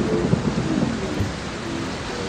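Recorded rain and thunder in a break of the backing song: a steady rushing hiss over a low rumble, with a few faint held tones.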